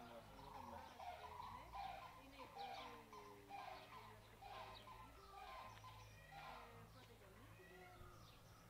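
Faint bird calls, short pitched notes repeating about every half second to a second, over a low steady hum.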